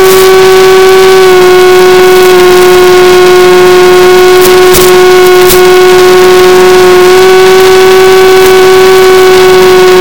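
Electric motor and propeller of a Mini Skywalker RC plane, picked up by its onboard camera, whining loudly at a nearly steady pitch that shifts slightly with small throttle changes. A few faint ticks come about halfway through.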